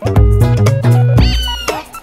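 Upbeat instrumental music with stepping bass notes. In the second half a cat meows once over it, a short call that rises and then falls in pitch.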